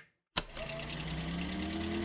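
A sharp click, then a steady, rapid mechanical rattle with a faint, slowly rising tone beneath it.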